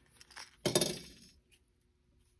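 Plastic shell of a Toyota Camry smart key fob being pried open with its emergency key. A few light clicks come first, then a sharp clink about two-thirds of a second in as the case pops open.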